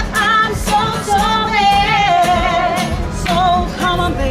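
Two women singing a song live over a strummed acoustic guitar, their held notes wavering in pitch.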